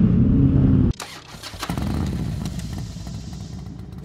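Vehicle engines running in traffic, heard from a moving motorcycle, the engine note rising slightly and then cutting off abruptly about a second in. It is followed by a rumbling, hissing sound that swells and slowly fades.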